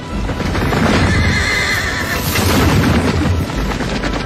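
Film soundtrack of a cavalry charge: massed horses galloping and neighing, with music underneath.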